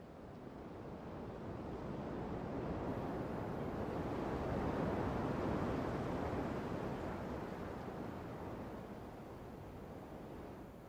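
Ocean surf: one wave swelling up over about five seconds, then washing back and fading.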